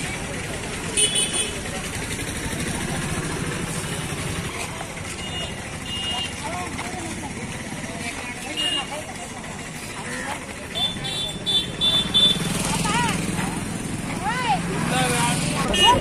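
Street ambience of people talking over traffic noise, with short high vehicle-horn beeps several times and a quick run of four beeps about eleven seconds in.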